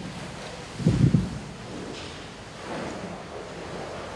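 People sitting down on chairs: a brief low thump about a second in, then steady shuffling and rustling.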